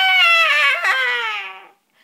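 A girl's voice singing one long, high note that slowly slides down in pitch and fades out shortly before the end.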